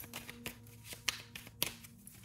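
A deck of tarot cards being handled and shuffled, giving a few light, sharp clicks of card against card.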